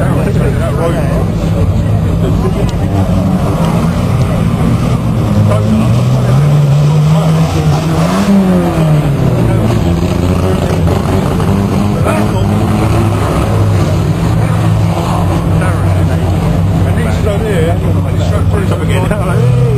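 Several banger racing cars' engines running and revving on the track. One engine climbs in pitch to a peak about eight seconds in, then falls away.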